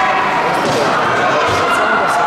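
Crowd chatter echoing in a large sports hall, with one dull thud about one and a half seconds in as a bare foot lands on the foam tatami mats during a karate kata.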